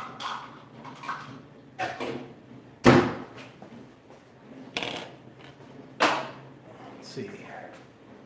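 Sharp knocks and clunks of things being handled around a kitchen, about six of them spread through the stretch, each dying away quickly; the loudest comes about three seconds in.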